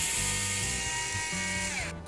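Small electric screwdriver running at speed with a steady high whine as it backs out a screw of a portable speaker's battery compartment. Near the end its pitch falls as the motor stops.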